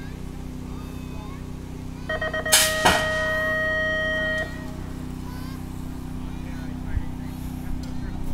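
BMX starting-gate cadence: a few quick beeps, then a long tone as the metal start gate drops with a loud bang. A steady low hum runs underneath.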